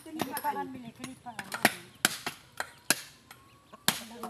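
Sharp, irregular knocks of knives striking hard coconut shells as the meat is worked out of split coconuts for copra, about five hits, with voices talking in the background early on.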